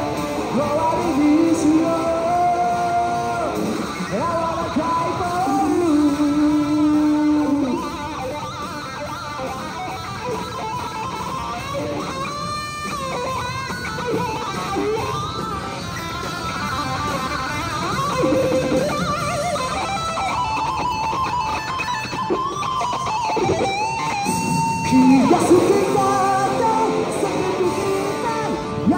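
Amplified electric guitar playing a melodic instrumental break of a rock song, with long held notes near the middle and toward the end.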